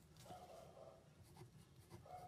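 Pen faintly scratching on paper as numbers are written by hand.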